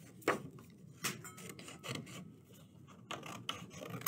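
Plastic marker rolling across a countertop and falling off it: a scraping roll broken by several sharp knocks, the loudest just after the start.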